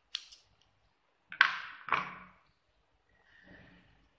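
Scissors cutting the yarn: two sharp snips about half a second apart, the first the loudest, with a faint rustle of yarn near the end.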